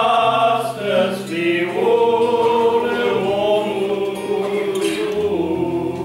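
Male vocal trio singing a hymn together in long held phrases, over sustained low accompaniment chords.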